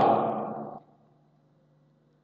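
The last spoken word fades out as an echoing tail in the first second, then near silence with only a faint steady hum.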